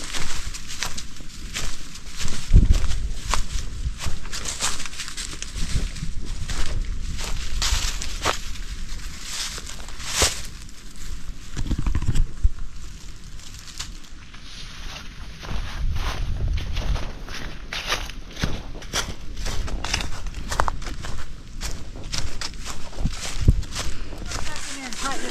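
Footsteps of two backpackers walking along a forest trail: an irregular run of steps and scuffs, with a few heavier low thuds.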